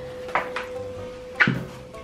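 Background music holding one long steady note, with two short knocks about a second apart. The louder second knock, near the end, is a ceramic baking dish being set down on a bamboo mat over a stone counter.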